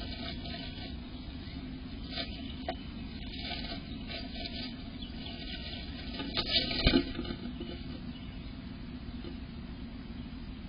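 Tree swallow moving about inside a wooden nest box: rustling in the grass nest and scratching on the wood, over a steady low rumble. A louder burst of knocks and scrabbling comes about six and a half seconds in.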